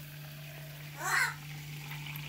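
Clear liquid poured from a glass bottle into a plastic cup: a faint, steady pouring trickle, with a short vocal sound about a second in.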